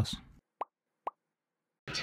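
Two brief, short pops about half a second apart in otherwise near silence.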